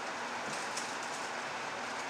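Steady, even background hiss with a few faint, soft rustles of a cloth being unfolded by hand.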